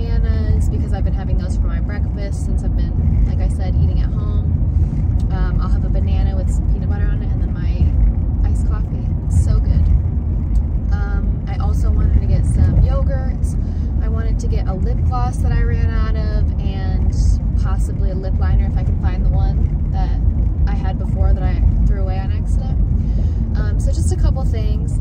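A woman talking throughout over the steady low rumble of a car's road and engine noise heard inside the cabin while driving.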